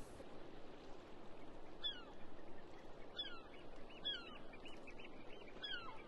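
Birds calling outdoors over a steady background hiss: a few short falling calls, and a quick run of short piping notes near the end.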